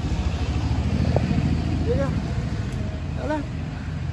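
A steady low rumble runs under a man's few short words.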